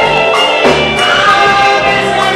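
Live gospel music: a man singing lead into a microphone, with a woman singing backing vocals and a band playing, the voices holding long notes.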